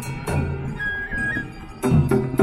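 Chindon street-band music: drum strikes at the start and again near the end, with a melody instrument holding a high note in between.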